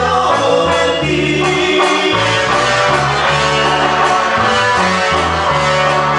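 Live band playing with a lead singer, keyboards, drums and a bass line that moves in held notes about once a second.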